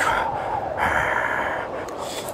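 A man breathing out hard in two long, breathy huffs, the second beginning just under a second in, with his hands cupped near his mouth.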